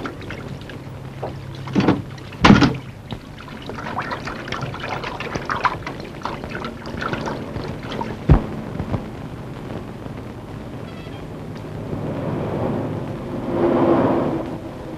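Street traffic noise with a few short knocks, the loudest about two and a half seconds in, and a swell of passing traffic near the end.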